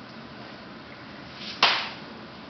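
One sharp slap of a hand strike in a karate form, about one and a half seconds in, loud above the room's quiet background and dying away quickly.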